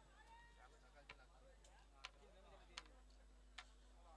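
Near silence: a faint, distant voice calling near the start, and four faint, sharp clicks spaced through the rest.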